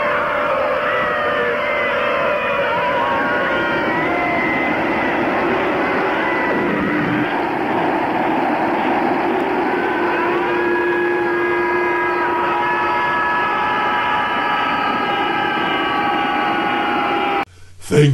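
Movie soundtrack: a steady rush of wind-like noise under wailing, gliding tones, joined from about ten seconds in by several sustained horn-like tones. It cuts off just before the end.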